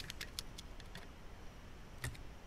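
A few faint, light clicks of a screwdriver turning a small screw on a switch circuit board inside a Beogram 4000 turntable, clustered in the first half second.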